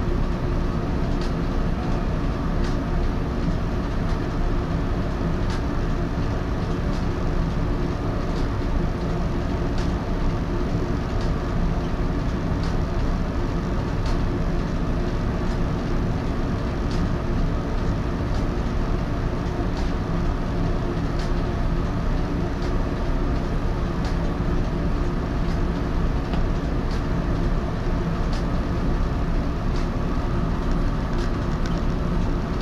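Steady hum of the Echizen Railway MC6001 electric railcar's on-board equipment, heard inside the cab while it stands still at a station. Faint light ticks come about once a second.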